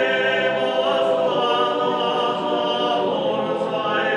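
Sardinian male folk choir singing a cappella, the voices holding sustained full chords that move to a new chord about a second in and again near the end.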